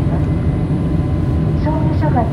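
Steady low rumble of a Boeing 787-8 airliner cabin in cruise flight, with the engine and airflow noise holding at an even level.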